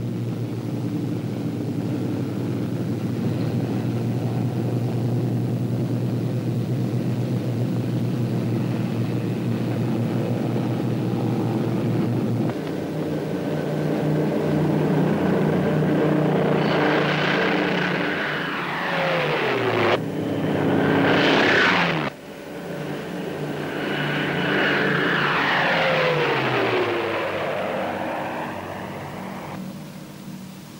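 Piston engines of propeller transport aircraft running at takeoff power: a steady drone, then two planes passing close by a few seconds apart, each falling in pitch as it goes by. The sound breaks off sharply about 20 and 22 seconds in.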